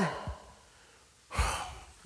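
A man's breath drawn in close to the microphone about a second and a half in, a short noisy rush with a low thump, after the tail of a spoken word fades.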